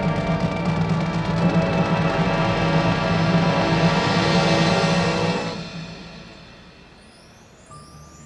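A full marching band of brass, woodwinds and front-ensemble percussion holds a loud sustained chord over timpani, swelling slightly. About five and a half seconds in the chord is released and dies away over about a second, leaving only a faint, quiet sound near the end.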